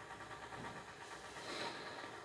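Quiet room with a soft, brief rustle about one and a half seconds in: a hand moving tarot cards on a tabletop.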